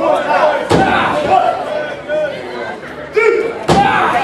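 Two sharp impacts from pro wrestlers grappling in the ring corner, about three seconds apart, over spectators talking and calling out.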